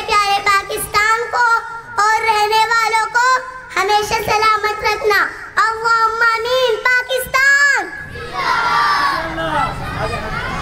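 A young girl sings a melodic line into a microphone, in phrases with long held notes, until about eight seconds in. Then a crowd of children cheers and shouts.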